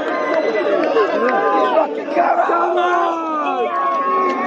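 A packed crowd of football supporters shouting at close range, many voices overlapping at once.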